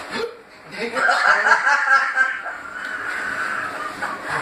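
A man's pained, high, wavering vocal whine lasting about two seconds, from the burn of a raw Carolina Reaper chilli.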